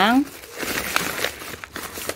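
Paper and plastic wrapping crinkling and rustling in short, irregular bursts as a hand pushes aside a calendar-sheet wrapping in a packed suitcase.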